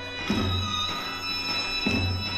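Turkish zeybek folk dance music: a held melody line over a slow, heavy beat, with a deep drum stroke twice.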